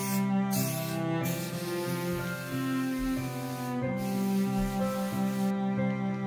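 Aerosol can of temporary spray adhesive hissing in several bursts, the longest over two seconds, stopping shortly before the end, laid over gentle background music with bowed strings.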